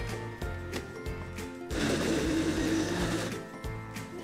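Small countertop blender switched on about halfway in and running for under two seconds, pureeing strawberry jam with canned chipotle peppers into an almost liquid sauce. Background music with a steady beat plays underneath.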